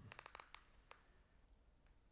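Near silence with a few faint, quick clicks in the first second, then only room tone.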